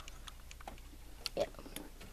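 Handling noise from a handheld camera being moved around: a few faint, scattered clicks and taps.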